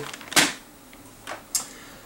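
A sharp clack of clear plastic packaging handled close to the microphone, followed by a couple of faint clicks.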